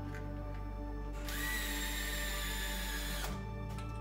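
Handheld electric screwdriver driving a screw into a small circuit board. It starts about a second in, runs for about two seconds with a steady whine, then stops suddenly.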